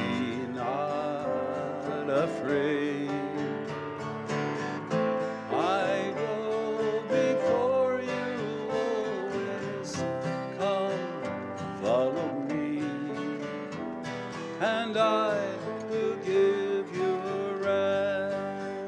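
Acoustic guitar playing a slow, hymn-like piece, with a wavering melody line carried over it.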